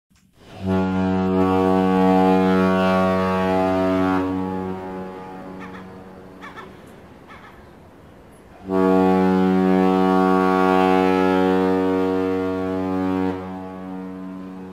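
Ship's horn of a Fjord Line cruise ferry sounding two long, deep, steady blasts. The first lasts about four seconds and fades away. The second starts about four seconds later and holds for nearly five seconds.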